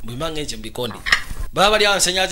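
Cutlery clinking against plates at a dinner table, with voices speaking over it.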